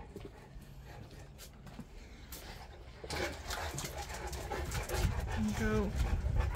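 A Dogue de Bordeaux panting. About halfway through, louder scuffing and rustling join in.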